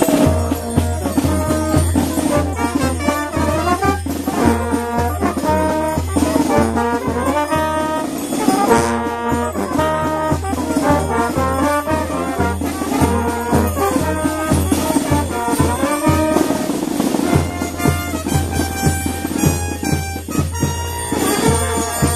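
Street brass band of trumpets, trombones and a sousaphone playing a lively tune over a steady low beat.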